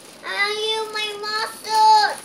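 A young child's high voice singing wordless, drawn-out notes: one long held note, then a shorter, louder one near the end.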